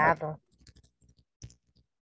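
A man's voice in the first moment, then a few faint, scattered clicks.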